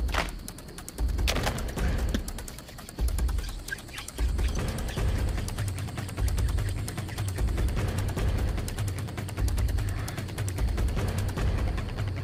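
Hand drill for friction fire: a wooden spindle spun hard between the palms against a light, dry wooden hearth board, giving a rapid dry rubbing chatter of wood on wood in strokes of about a second, each with a low rumble. This is the drilling stage that produces an ember.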